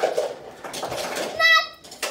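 Young children's voices: indistinct vocalising, then a loud, high-pitched squealed or sung note from a child about one and a half seconds in.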